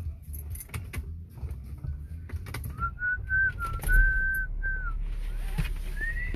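Someone whistling a few short notes as a single pure tone that holds, wavers slightly and drops at the end. Under it runs a low steady rumble, with scattered clicks and knocks in the first half.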